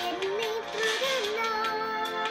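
A young girl singing a drawn-out line without clear words, her pitch wavering up and down, over chords she plays on a digital piano. Held piano notes come in during the second half.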